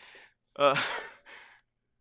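A man's breathy, sigh-like 'uh' about half a second in, trailing off.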